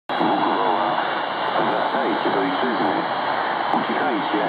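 Shortwave broadcast of a voice speaking Polish, received on a Tecsun PL-660 portable radio tuned to 4330 kHz in upper sideband and played through its speaker. The voice sounds thin and narrow over a steady hiss.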